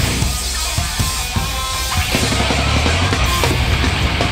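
Live heavy rock band playing loud: a drum kit pounding fast under distorted electric guitars and bass.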